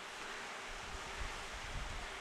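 Steady faint hiss of room tone and recording noise, with no distinct sound event.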